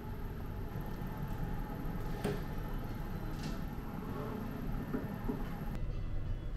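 Steady low rumble of restroom room noise, with two sharp clicks a little over a second apart near the middle and a couple of light knocks later, as a toilet stall door is handled and opened.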